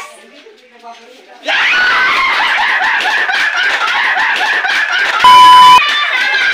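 A group of people suddenly bursts into loud screaming and laughter about a second and a half in, and it keeps going. Near the end a loud steady beep tone lasts about half a second.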